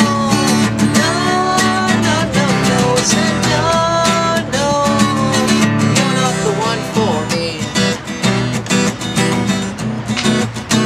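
Steel-string acoustic guitar strummed in a steady rhythm with a man singing over it for roughly the first six seconds; after that the guitar carries on strumming alone.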